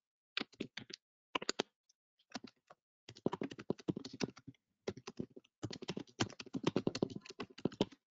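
Typing on a computer keyboard: a few scattered keystrokes at first, then two quick runs of rapid key clicks, the first about three seconds in and the second from just under six seconds in.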